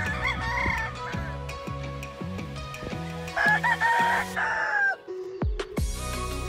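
Gamefowl rooster crowing: a shorter call in the first second, then one long, louder crow about three and a half seconds in. Background music with a steady beat runs under it.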